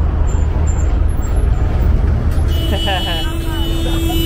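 Road traffic passing close by over a steady, loud low diesel engine drone. About two and a half seconds in, a vehicle horn starts a long, steady note that is still sounding at the end.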